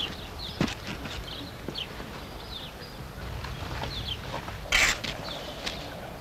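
Small birds chirping repeatedly in short falling notes, with a sharp knock just over half a second in and one loud short burst of noise about five seconds in.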